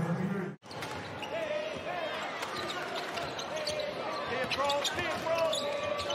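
Basketball game sound in an arena: a ball bouncing on the hardwood court, with voices around it. The sound cuts out sharply for a moment about half a second in.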